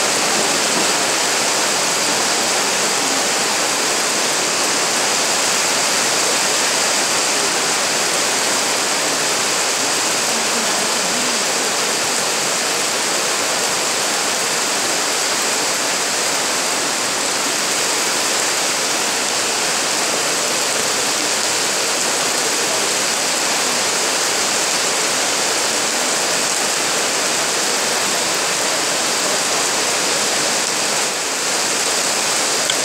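A steady, loud hiss of noise without a break, like rushing water or heavy rain, with no clear voices or music standing out of it.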